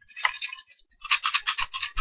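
Plastic toy water pistol handled close to the microphone: a short scrape, then a rapid run of rough scraping strokes, about ten a second.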